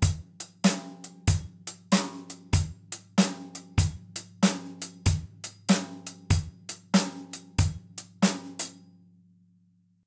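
Drum kit playing a basic shuffle groove in an eighth-note triplet feel at a steady medium tempo: a swung hi-hat pattern over bass drum on beats one and three and snare on two and four. It stops about three-quarters of a second before the end and rings out.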